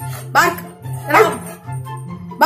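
Yellow Labrador retriever barking twice, about a second apart, over background music.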